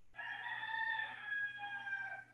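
A rooster crowing once, a single long call that sinks slightly in pitch near the end, heard faintly through a participant's microphone.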